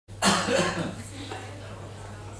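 A person coughs loudly, a short burst of under a second, then a low steady electrical hum remains.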